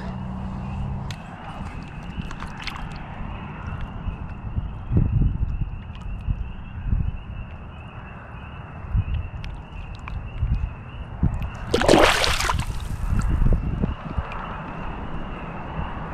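Pond water sloshing and gurgling around a largemouth bass as it is held in the water and released, with one loud splash about three quarters of the way through. A low wind rumble on the microphone runs underneath.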